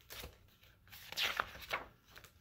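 Paper rustling as a page of a large hardcover picture book is turned and smoothed flat by hand: a short rustle at first, then a longer, louder rustle about a second in.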